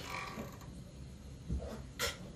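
Faint squeaking and scratching of a dry-erase marker drawing lines on a whiteboard.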